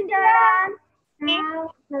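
Children's voices calling out long, sing-song goodbyes, two drawn-out calls with a short gap between them.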